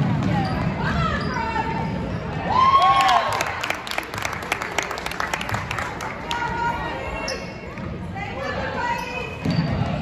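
Basketball game on a hardwood gym floor: a ball bouncing in a run of knocks, sneakers squeaking, and players and spectators shouting, with one loud shout about three seconds in.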